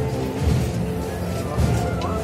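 Municipal wind band playing a processional march behind the palio: held brass and woodwind chords over a bass drum beat about once a second.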